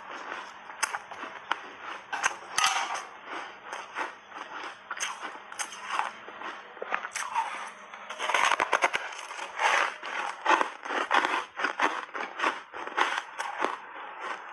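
Close-up crunching and chewing of dry, brittle reshaped ice coated in matcha powder: a continuous run of sharp, crackling crunches. The loudest crunching comes about eight seconds in, with a big bite from a block.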